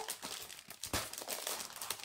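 Clear plastic packaging of a cross-stitch kit crinkling and crackling irregularly as it is handled and opened, with one sharper click about a second in.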